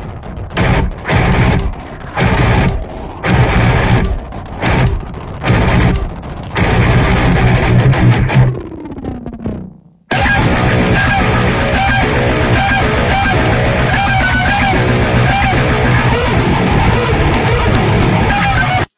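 Distorted electric guitar playing a heavy metal riff over a full-band backing track: stop-start muted chugs with short gaps between them at first, a falling pitch glide and a brief drop-out about nine to ten seconds in, then a continuous dense riff.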